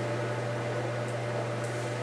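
Steady low electrical hum with a faint hiss under it, unchanging throughout: room tone with no distinct event.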